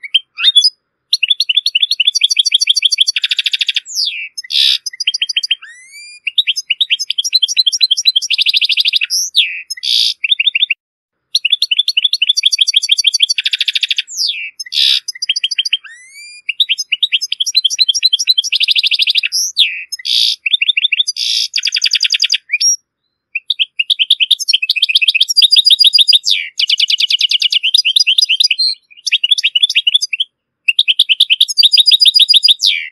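European goldfinch singing: long runs of rapid twittering and trills, with a few short pauses between phrases.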